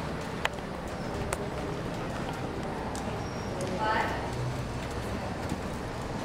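A horse's hooves stepping on soft arena dirt, with a couple of sharp clicks in the first second and a brief voice about four seconds in.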